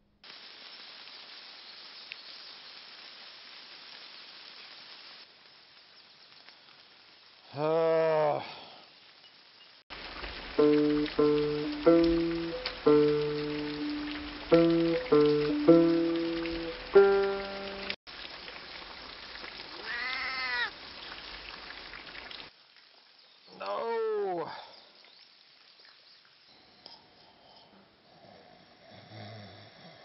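Three drawn-out animal calls, each rising and then falling in pitch, come about 8, 20 and 24 seconds in, with a short passage of music of held, stepping notes in the middle. Low steady background sound fills the gaps.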